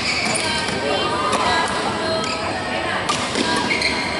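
A junior badminton rally: sharp racket strikes on the shuttlecock and short squeaks of shoes on the court mat, over background chatter.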